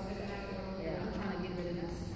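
Indistinct voices talking in the background, with no clear words.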